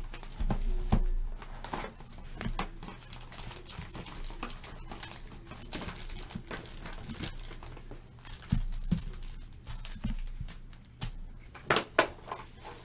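Stack of trading cards flipped through by hand, with crinkling of opened foil pack wrappers: a rapid, irregular run of small clicks and rustles.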